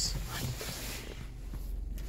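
Rustling handling noise from a phone being moved around inside a car cabin, over a low steady hum.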